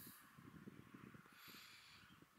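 Near silence: faint outdoor background noise with no clear sound event.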